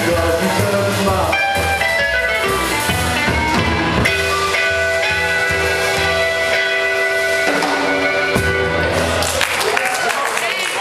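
Live rockabilly band playing: drums, upright bass and guitars, with long held harmonica notes in the middle. The song winds down near the end as applause starts.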